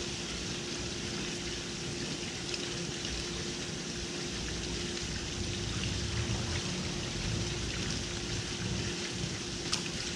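Water pouring steadily from the pool wall's spouts and splashing into the pool, with a steady hum underneath.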